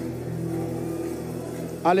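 A soft, sustained low keyboard chord, an organ-like pad held steady under the prayer, with a man's voice coming in near the end.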